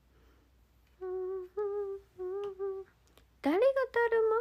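A young woman humming four short, level notes with closed lips; near the end her voice slides upward into a louder held tone.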